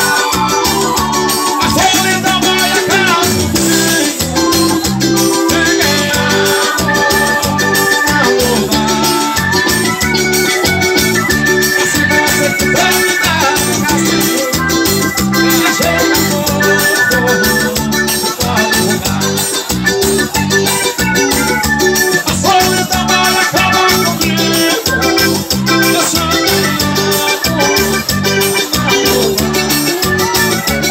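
Loud live dance music with a steady beat and repeating bass line, led by an electronic keyboard melody and played through a PA system.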